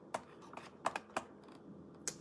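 A few scattered, light keyboard clicks, like keystrokes typed to bring up a page.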